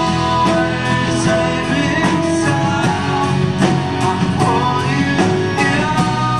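Live folk-rock band playing: strummed acoustic guitar, piano accordion, bass and drum kit, with a steady drum beat under held accordion notes.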